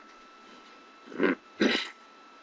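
Two short, loud breath noises from a person close to the laptop microphone, about half a second apart.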